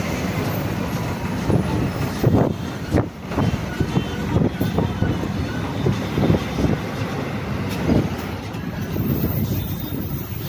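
Inside a moving city bus: steady engine and road rumble, with frequent knocks and rattles from the bodywork and fittings as it rolls along.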